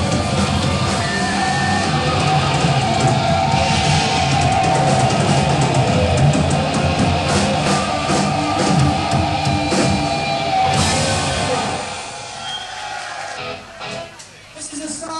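Live heavy rock band playing loudly: distorted electric guitars, bass and drum kit, in a lo-fi audience recording. The music drops away about twelve seconds in.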